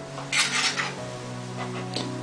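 A metal utensil scraping and clinking against a ceramic bowl while stirring chocolate-hazelnut spread and grated coconut into a thick paste. The loudest scrape comes about half a second in, with a lighter one near the end.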